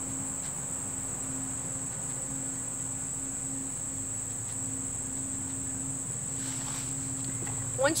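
Steady high-pitched chorus of crickets trilling, with a steady low hum beneath it.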